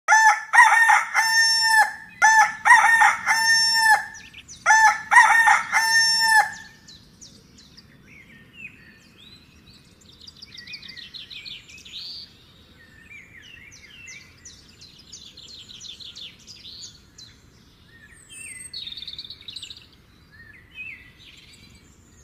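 A rooster crows three times in quick succession, each cock-a-doodle-doo about two seconds long. Small birds then chirp and twitter much more quietly for the rest of the time.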